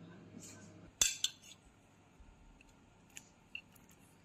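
A metal spoon clinking against a ceramic plate, with two sharp clinks about a second in and a few fainter taps near the end.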